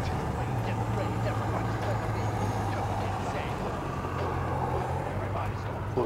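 A car engine running with a steady low hum, faint indistinct voices underneath.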